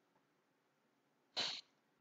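A single short, breathy sound from a man, a quick sharp breath or sniff, about one and a half seconds in, against otherwise near silence.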